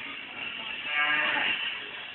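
A person's single long drawn-out shout or groan, about a second in and lasting under a second, over the steady hubbub of a small crowd.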